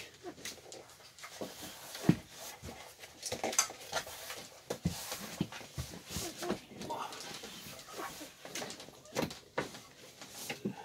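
Irregular knocks, scrapes and rustling as the wooden catch board of a manual overhead RV bunk is pulled back by hand to free the bed, with cloth rubbing close to the microphone; the sharpest knock comes about two seconds in.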